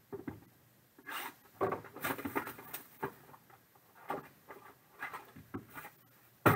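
Trading-card packaging being handled: a cardboard box and a plastic card case rustle, scrape and click irregularly as they are opened and moved about on the table.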